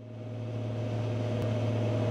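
Cessna 182G's six-cylinder piston engine and propeller droning steadily, heard from inside the cabin in flight, fading in over the first second.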